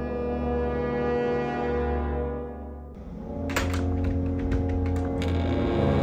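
Suspenseful background score of sustained low brass-like drone chords. The first chord fades out about halfway through and a new one swells in, joined by a run of sharp ticks and clicks.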